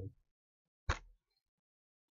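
A single short, sharp click with a brief low thud about a second in; otherwise near silence.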